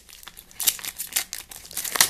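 Crinkling of a foil Pokémon trading-card booster pack wrapper and cards being handled, in quick irregular crackles.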